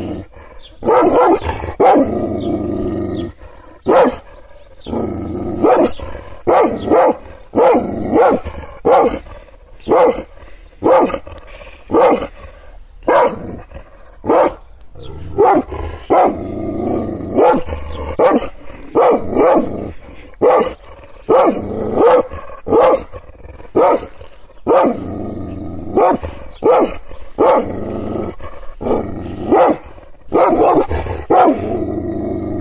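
Kangal shepherd dog barking angrily and repeatedly, loud deep barks about one to two a second, with longer stretches of growling between runs of barks.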